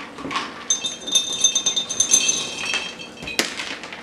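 Shelled peanuts poured from a plastic container into an empty glass jar: a rush of small clinks with the glass ringing high. A single sharp knock comes about three and a half seconds in.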